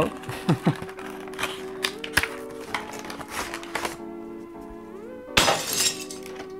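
Background music, with cardboard and plastic packaging rustling and crackling in scattered clicks as a PC fan is pulled out of its box. The loudest is one noisy crinkling burst near the end.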